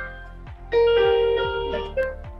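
Electronic keyboard playing a melody. A louder sustained chord is struck about three quarters of a second in and slowly fades.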